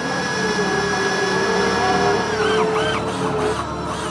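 Film sound of a robot's head powering up: a steady electronic hum and whine made of several held tones, with a few short warbling chirps about two and a half seconds in.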